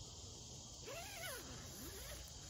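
Insects, crickets or the like, trilling steadily in woodland, with a faint rising-and-falling call about a second in.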